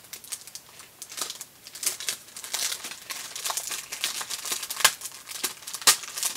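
Clear plastic packaging crinkling and crackling as it is handled and opened, with a couple of sharper cracks near the end.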